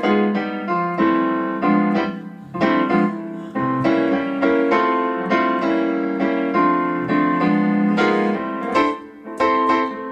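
Digital piano on its grand piano voice, played with both hands: a jazz passage of chords struck in quick succession, each ringing briefly before the next.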